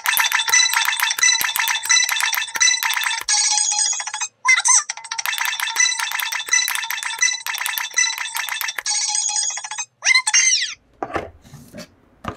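A toy's electronic sound chip plays a thin, bass-less electronic jingle through a small speaker. It runs in two stretches of about four seconds each, with short sliding voice-like squeaks between and after them. Rubbing handling noise follows near the end.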